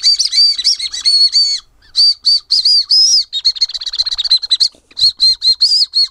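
Coris Fue Ramune whistle candy blown between the lips: a loud, shrill, slightly warbling whistle sounded in several bursts, some broken into quick flutters.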